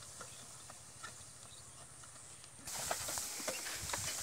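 Cow-drawn wooden cart loaded with paddy moving over a dry harvested field: scattered hoof steps and knocks from the cart. The sound is faint at first and becomes louder and closer about two and a half seconds in.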